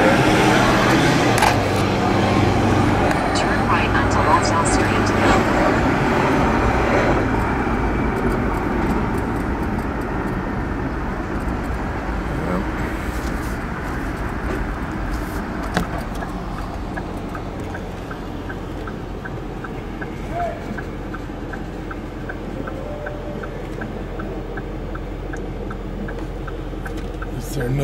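Car cabin: engine and road noise while driving, easing off as the car slows to a stop, then a steady low idle hum. In the second half the turn-signal indicator clicks steadily, about two clicks a second, for a right turn on red.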